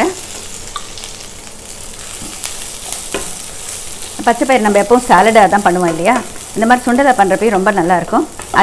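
Sprouted green gram sizzling in hot oil in a nonstick pan. From about four seconds in it is stirred hard with a wooden spatula, making a loud scraping sound that wavers in pitch.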